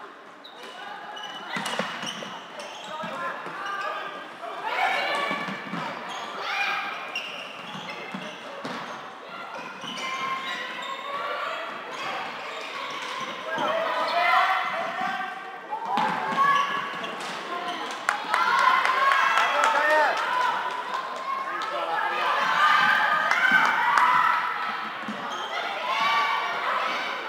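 Floorball match play in a sports hall: players' voices calling and shouting across the court, with short clacks of sticks striking the plastic ball, all with the hall's echo.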